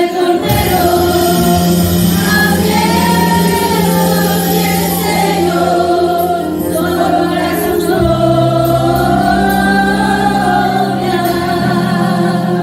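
Several women singing a hymn together through handheld microphones, over sustained low accompaniment notes that shift to a new chord about eight seconds in.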